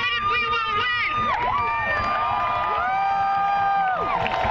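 Crowd of protesters cheering, with several voices holding long overlapping cries that rise in and fall away, after a short burst of rapid shouted voice in the first second.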